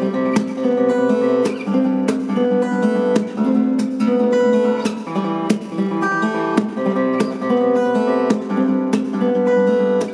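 Steel-string acoustic guitar played fingerstyle: picked melody and bass notes ringing together, punctuated by sharp percussive accents about twice a second.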